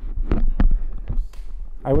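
Microphone handling noise: a handful of dull thumps and rubs as the microphone is passed and taken up, over a steady mains hum from the sound system.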